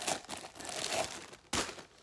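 Clear plastic wrapping crinkling as it is pulled off a glass tumbler, with one sharp click about one and a half seconds in.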